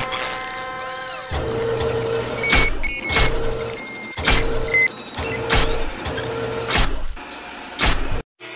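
Construction-site sound effects for an animated logo intro: machinery running with a low, evenly repeating beep, sharp metallic clanks at intervals, and a few short high beeps.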